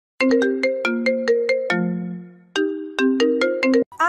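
A phone-ringtone-style melody of quick, bright struck notes, like a marimba. One phrase ends on a longer low note, then after a brief pause it repeats and cuts off suddenly.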